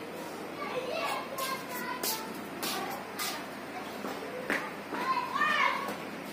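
Indistinct children's voices in the background, with a louder voice near the end and a few short, sharp clicks in between.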